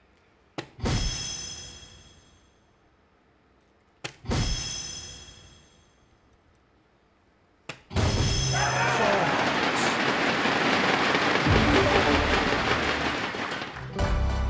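Three soft-tip darts strike an electronic dartboard a few seconds apart, each with a sharp click. The first two hits set off the board's ringing chime, which fades over about a second and a half. The third hit is followed by about six seconds of loud, steady crowd noise.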